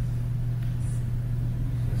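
A steady low hum, unchanging throughout, with no speech over it.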